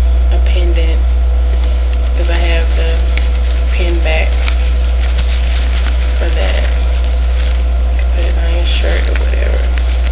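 Handmade fabric flowers being handled and turned close to the microphone, giving soft crackling and rustling, over a loud steady low hum.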